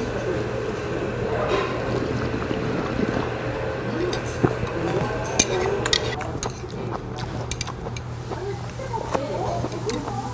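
Eating sounds: slurping and drinking spicy seafood noodle soup (jjamppong) from a large ceramic bowl, with short sharp clinks of chopsticks and bowl, mostly in the second half. Under it run background voices and a steady low hum.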